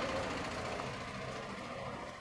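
Faint, steady background engine rumble that slowly fades.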